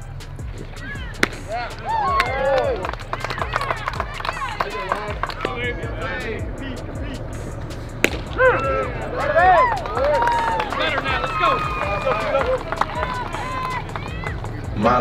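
Background music with a steady low bass and sung or shouted vocal lines that glide up and down. Two sharp cracks cut through it, one about a second in and one about eight seconds in.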